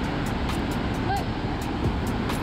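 Waterfall cascade rushing over rocks, a steady noise of falling white water.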